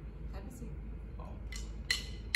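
A couple of light metallic clinks from the drum kit's cymbals, about a second and a half in, over faint room murmur.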